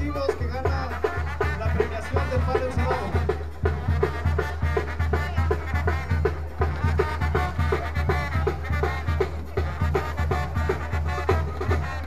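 A live brass band playing a quick dance tune, with a tuba carrying a steady bass line under an even drum beat and brass on the melody.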